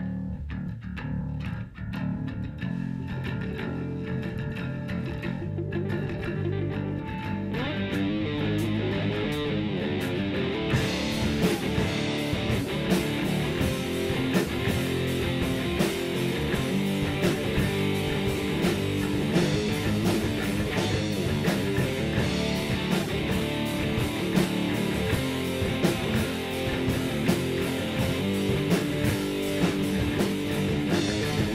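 A live rock band of electric bass, electric guitar and drum kit playing a song. It starts at once with low bass notes and thin guitar, and fills out into the full band with cymbals by about ten seconds in.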